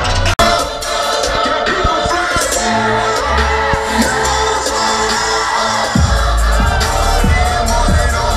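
Loud live electronic DJ music over a venue PA, heard from inside the crowd, with voices and crowd shouts over it. The sound cuts out for a split second less than half a second in, the music runs on with little bass, and heavy deep bass comes back in about six seconds in.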